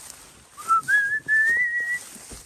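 A clear whistle, starting about half a second in and climbing in pitch in three linked steps, held for about a second and a half.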